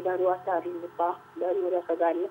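Speech: a person talking without pause.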